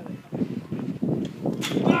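Indistinct voices of people talking at the trackside, with a clearly spoken word near the end.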